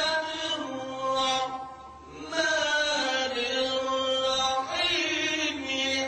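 A man's voice reciting the Quran in the melodic, drawn-out style, in maqam Nahawand: long held, ornamented notes, with a short breath pause about two seconds in.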